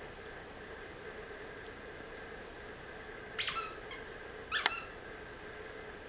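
Two short, high squeaks from a hand-squeezed squeaky dog toy, about a second apart a little past halfway, in an otherwise quiet room.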